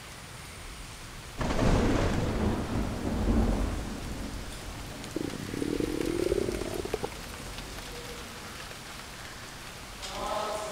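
Thunder: a sudden clap about a second and a half in that rolls away in a low rumble over the next few seconds, over a steady hiss like rain.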